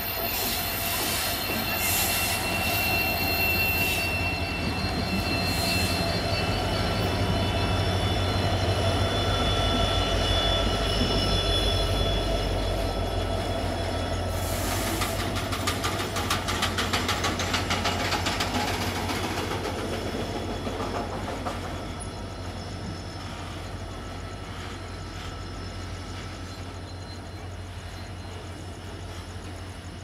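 Twin diesel locomotives, led by a WDG4 (EMD GT46MAC), passing close with a heavy engine drone and thin wheel squeal, hauling loaded BTPN tank wagons. About halfway through, the wagons' wheels take over with a rapid clickety-clack over the rail joints, which then fades as the train rolls away.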